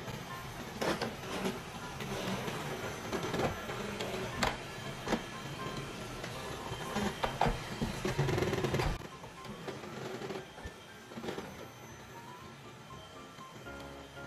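Xiaomi Mi Robot Vacuum-Mop 1C running with a steady motor hum and scattered clicks and knocks as it cleans, under background music. The hum gets quieter about two-thirds of the way in.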